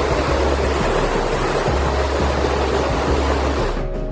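Flash-flood water rushing down a rocky wadi, a loud steady rush that cuts off abruptly just before the end. Background music with low bass notes runs underneath.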